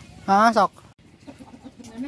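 A chicken giving one short, loud call about a third of a second in, lasting about half a second.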